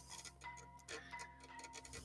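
Faint background music under near silence, with a few soft ticks.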